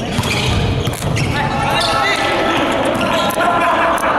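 Volleyball being hit and bouncing on a hardwood gym floor during a rally, a few sharp ball impacts, with players' voices calling out through the second half.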